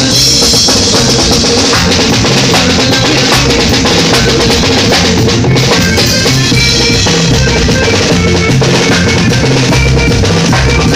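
A live norteño group playing loudly through a PA. The drum kit is to the fore, with a steady bass-drum and snare beat and cymbals over bass guitar.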